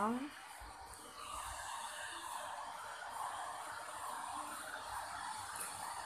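White noise played from a phone for a sleeping baby: a steady, even hiss.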